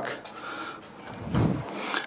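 Wooden front door being opened: a low thud about one and a half seconds in, then a brief rubbing sound as the door swings open.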